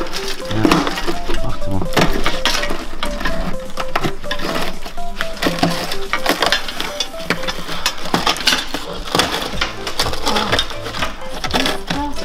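Background music with a melody, over irregular crunching and clinking as a gloved hand breaks loose and pulls out rust scale and rotted sheet metal from a rusted-through car sill.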